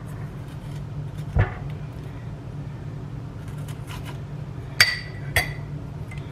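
A metal spoon clinks twice against a small ceramic bowl near the end, each clink ringing briefly, as squash seeds are knocked off it. A soft knock comes a little over a second in, over a steady low hum.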